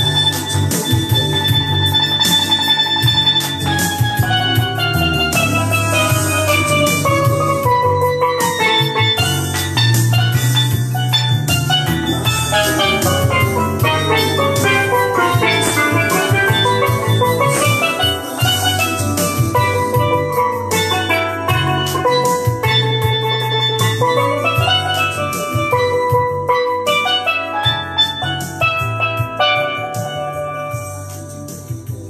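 Steel pan played with sticks in quick runs of notes that sweep down and back up the instrument, over a backing track with bass and drums. The music tails off near the end.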